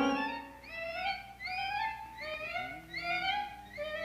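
Orchestral cartoon score: a run of short pitched phrases that each swoop up and back down, one roughly every three-quarters of a second, quieter than the full orchestra around it.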